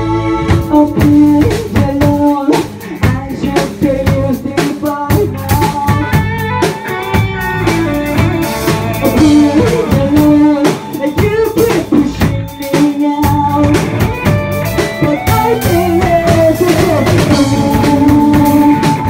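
A live rock band playing: a singer over electric bass and a drum kit, with steady, dense drum hits.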